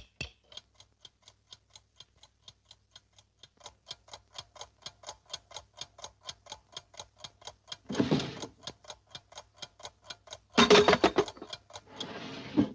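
Cartoon alarm clock ticking steadily and quickly, about four to five ticks a second, growing louder a few seconds in. It is broken by two loud, raspy bursts of a cartoon voice, about 8 and 11 seconds in.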